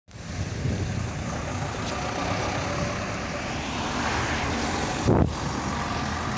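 PAZ-32053 bus engine running as the bus drives past among road traffic, the sound swelling about four seconds in. A short loud bump comes just after five seconds.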